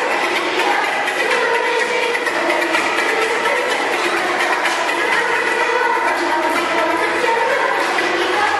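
Children's choir singing, holding steady sustained notes with no break.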